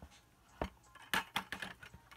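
A handful of irregular sharp clicks and taps from a perforated red plastic sorting bucket being handled with dubia roaches and frass inside it.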